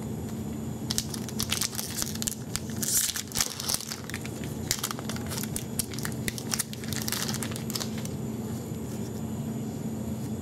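Foil wrapper of a hockey card pack crinkling and tearing as it is picked up and ripped open by hand: several seconds of crackly rustling starting about a second in and dying away a couple of seconds before the end.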